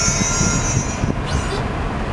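Passenger train rolling through a rail yard: a low rumble of wheels on rails, with a high steady wheel squeal that fades out about halfway through, followed by a brief high squeak.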